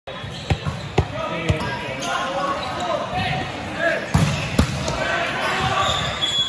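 A volleyball bounced three times on a hard gym floor, about half a second apart, as a pre-serve routine, echoing in the hall. Two sharper ball hits follow a little after four seconds in, with voices calling around the court.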